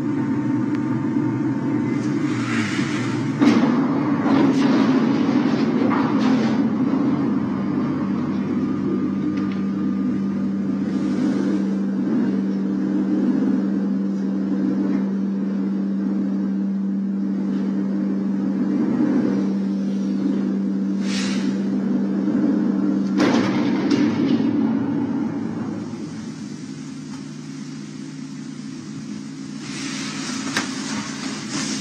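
Steady low hum of an elevator car in motion, with a few short knocks and rattles. The hum falls away near the end, which fits the car coming to a halt.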